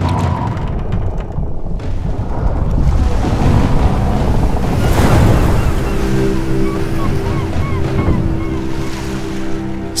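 Sea-surf and wind ambience under a music score, with sustained music tones coming in about halfway through and a few short high chirps.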